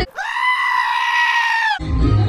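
A black-headed sheep bleating once: a single long, high call of about a second and a half that holds its pitch and stops abruptly.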